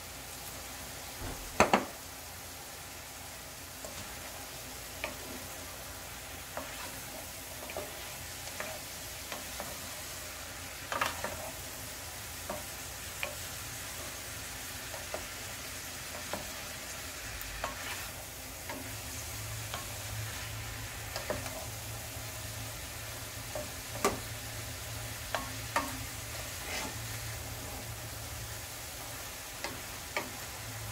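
Wooden spatula stirring sliced bitter melon and ground beef in a nonstick frying pan over a low, steady sizzle, with scattered scrapes and taps of the spatula against the pan. There is a sharper knock a little under two seconds in.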